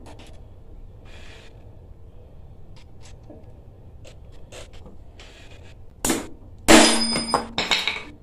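Hand tools working at the bolts of a pressure washer pump: a few faint small clicks, then about six seconds in a sharp metal knock and a loud ringing clank, with another clatter near the end.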